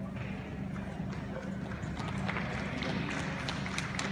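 Hoofbeats of a ridden horse moving over the arena's dirt surface, growing louder in the second half as the horse comes closer, over a steady low hum.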